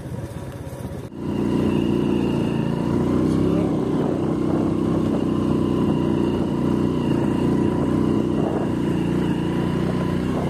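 Motorcycle engine running at a steady speed while riding. It becomes louder and steadier about a second in.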